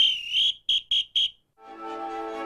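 High-pitched electronic beeps: one tone of about half a second, then three short beeps at the same pitch, about four a second. Music fades in near the end.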